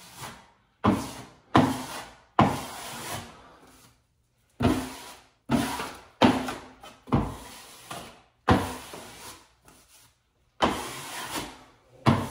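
A plastic wallpaper smoother swept in repeated strokes over a wet wool wallcovering: about ten swishes, each starting sharply and trailing off. The strokes push buckles and a wrinkle outward across the sheet.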